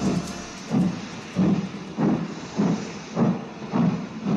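After the music ends, a rhythmic sound effect of evenly spaced, noisy beats, about three every two seconds, that begins to fade near the end.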